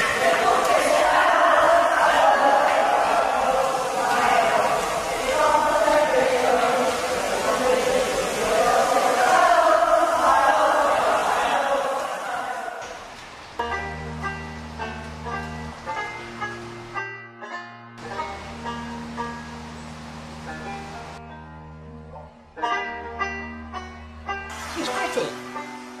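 A group of voices singing together, then a little over halfway through the singing gives way to plucked-string music: picked notes over held low bass notes, broken by two short pauses.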